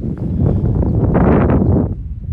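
Wind buffeting the microphone outdoors, swelling into a stronger gust about a second in and dropping off just before the end.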